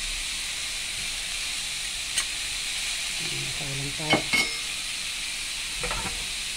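Sliced pork frying in garlic oil in a metal pan, a steady sizzle. A metal ladle clicks against the pan about two seconds in and twice around four seconds in, as palm sugar is put into the pan.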